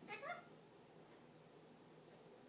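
Parrotlet giving two quick rising squeaks just after the start.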